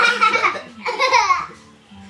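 Two loud bursts of young children's wordless excited squealing and laughing in the first second and a half, with music from a children's TV channel playing in the room.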